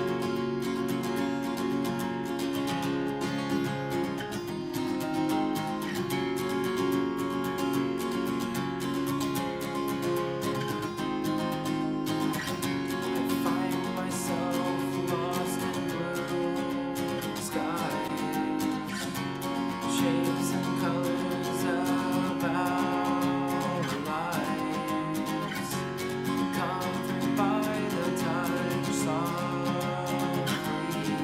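Acoustic guitar strummed steadily in chords through an instrumental passage of a song. From about midway a wordless voice sings along, its pitch bending and wavering.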